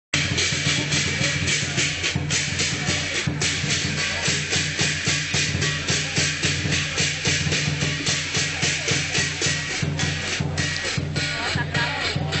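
Lion dance percussion: a large Chinese drum with crashing hand cymbals and a gong, played as a fast, steady beat of about four or five strikes a second.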